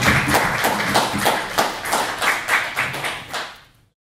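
Audience applauding at the end of a lecture, many hands clapping; the applause fades out near the end and then cuts off abruptly.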